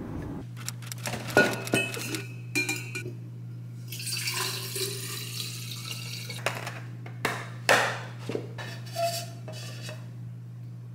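A large insulated tumbler being filled and closed on a kitchen counter: its lid and straw click and knock against it, and there is a pouring, clinking stretch about four seconds in as something is poured in from a bag. A steady low hum runs underneath.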